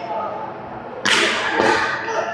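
Badminton racket strings striking a shuttlecock, two sharp cracks: one about a second in and another about half a second later.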